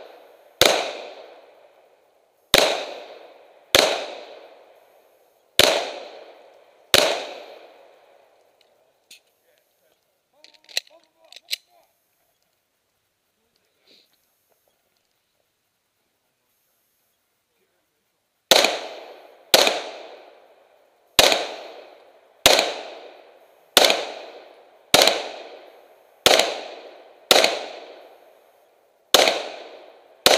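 Handgun shots: five shots one to two seconds apart, each with a short echoing tail, then a pause of about ten seconds broken only by a few faint clicks, then a string of ten shots about one a second.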